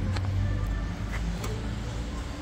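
Steady low background hum with a few faint light clicks of hand tools being handled, a feeler gauge and screwdriver.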